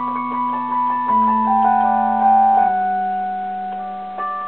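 Slow, soothing piano music: held chords over a low bass, changing about a second in and again near three seconds, with a few higher notes struck over them.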